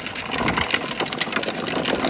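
Hard plastic wheels of a child's ride-on toy rattling and grinding over rough tarmac, a dense, steady crackle.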